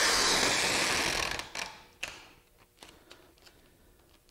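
Packing tape being pulled off its roll in a tabletop tape dispenser: a steady, noisy unwind for about a second and a half that then fades out, followed by a few light clicks.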